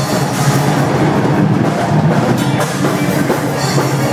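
Live death-thrash metal band playing loud: distorted electric guitars with a drum kit, a dense, unbroken wall of sound.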